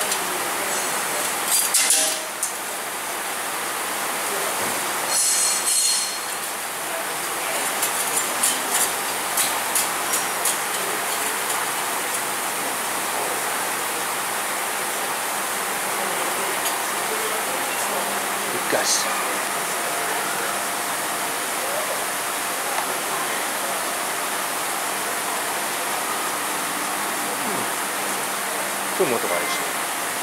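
Steady hiss of a tyre workshop, with scattered light clicks and taps from hands working at a wheel-balancing machine, in small clusters early on and once more later.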